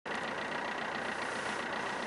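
An engine idling steadily, with a thin high-pitched whine held through it.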